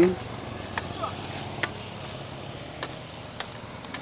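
A sickle cutting the branches of a felled young durian tree: about five short, sharp chops, irregularly spaced.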